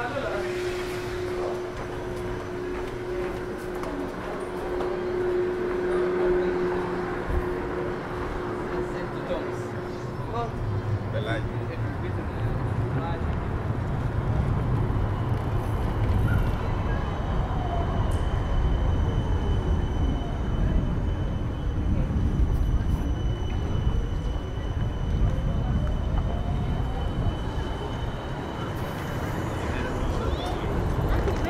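Busy street ambience with passers-by talking. From midway on, a tram rumbles along the street with an electric motor whine whose pitch falls as it slows, then rises again as it pulls away.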